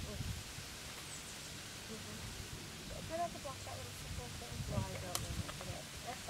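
Faint voices of people talking, unclear, over steady outdoor background noise, with a single sharp click about five seconds in.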